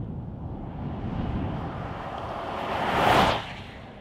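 A vehicle passing close by: tyre and wind rush builds, peaks sharply about three seconds in, then dies away.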